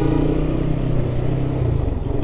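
Single-cylinder engine of a Lifan KPT 150 4V fuel-injected motorcycle running steadily as it is ridden, its pitch dipping slightly near the end.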